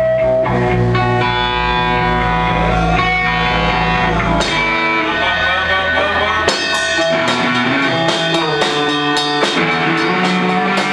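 Rock band music with guitar and drum kit. The low bass drops out about halfway through, and regular drum hits come in about two-thirds of the way in.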